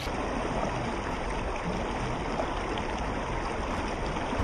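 River water flowing, a steady rushing of the current.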